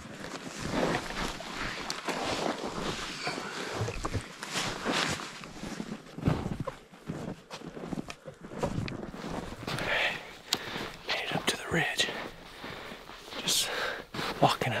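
Footsteps in snow, irregular steps with rustling of clothing and gear close to the microphone.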